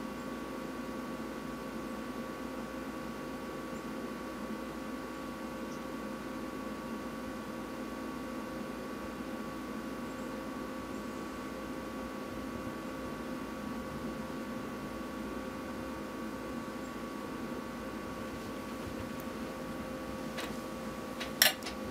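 Steady room tone: an unchanging hum made of several faint, held tones over a soft hiss, with no events.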